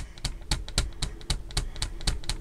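A quick, irregular run of clicks from switches on a camper van's electrical control panel being pressed to turn the power and lights on.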